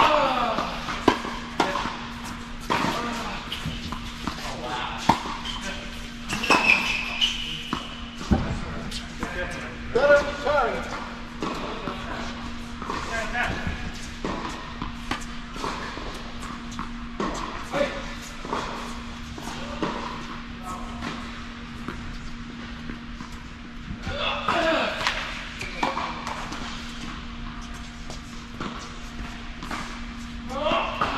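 Tennis balls being struck by racquets and bouncing on an indoor hard court: sharp irregular pops spaced a few seconds apart, echoing in a large hall. Voices talk now and then, over a steady low hum.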